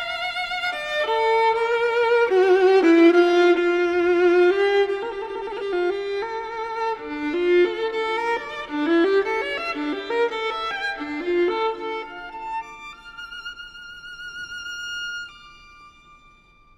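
Solo violin playing a slow, singing melody with wide vibrato. It is loudest early on, then grows softer and ends on a long held high note that fades away near the end.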